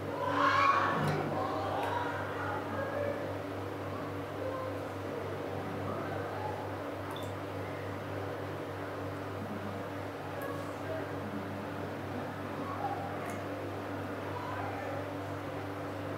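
Steady electrical buzz from a water-drainage pump motor running in the tunnel, a low hum with several steady tones above it.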